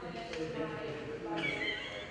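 Indistinct talking: voices in the room too unclear for the recogniser to make out, with no music playing.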